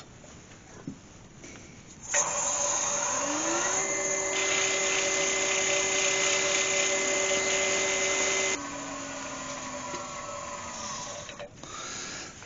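Nova Galaxi DVR wood lathe starting about two seconds in, its motor whine rising as it comes up to speed, then running steadily with the hiss of sandpaper held against the spinning wooden piece. It is then switched off, and its whine falls as it spins down.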